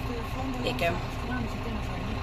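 Tractor engine running steadily, a low even drone heard from inside the cab.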